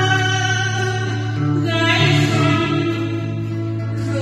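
A singer performing a Vietnamese song over instrumental accompaniment with a steady bass line and plucked strings.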